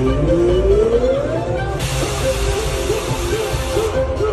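Live band with violin, electric guitar and saxophone playing an instrumental passage over bass and drums. A long rising slide fills the first couple of seconds, then comes a run of short repeated notes, with a bright hiss over the top from about two seconds in until just before the end.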